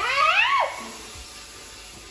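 A single short, high-pitched vocal cry right at the start, rising sharply in pitch and then dropping away within about half a second.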